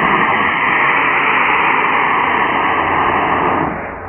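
Black-powder model rocket motor (Estes A10-3T) firing at liftoff: a loud, muffled, steady rushing hiss that starts suddenly and dies away near the end.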